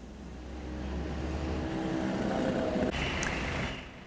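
Street traffic: a motor vehicle's engine running close by, growing louder over the first three seconds, then easing off and fading near the end.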